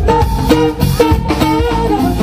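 Live rock band playing a song, with drum kit strikes about twice a second under held pitched instrument notes.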